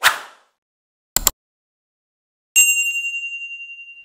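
Subscribe-reminder sound effects: a short whoosh, a quick double mouse click about a second in, then a notification bell ding that rings on and fades away over the last second and a half.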